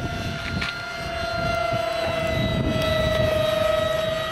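Twin 70 mm electric ducted fans of a radio-controlled A-10 model in flight, a steady whine that sinks slightly in pitch.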